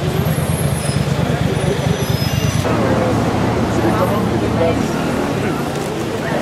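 Steady low rumble of a motor vehicle's engine running close by, with people talking over it.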